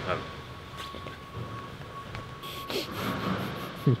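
Quiet room tone in a large shed with faint, indistinct talk and a thin, steady high-pitched whine underneath.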